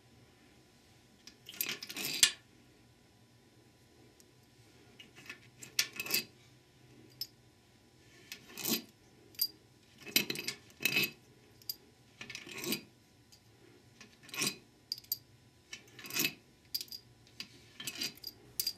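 Steel pump-to-case bolts being lifted out of a transmission pump one at a time and dropped into a palm, clinking against the other bolts. About a dozen separate metallic clinks, roughly one every second or so.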